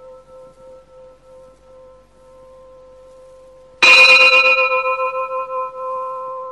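A struck bell ringing: an earlier stroke is still dying away with a slow pulsing wobble, then the bell is struck again about four seconds in and rings out, several tones fading together.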